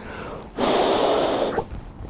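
A man's long, heavy exhaled breath, a sigh lasting about a second, starting about half a second in.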